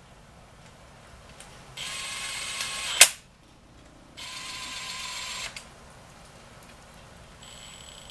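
Kobalt 24-volt cordless drill spinning a socket on a long extension against a bolt. It runs in two short bursts of a steady high whine, each about a second long, the first ending in a sharp click.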